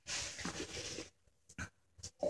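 Rustling handling noise close to the microphone for about a second, followed by a soft click.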